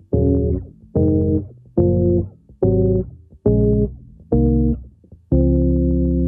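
Five-string electric bass playing three-note seventh-chord voicings (root, third and seventh, no fifth, with the root dropped an octave) up the D-flat major scale. Seven chords are plucked one after another, a little under a second apart, and the last, D-flat major seven, is left ringing.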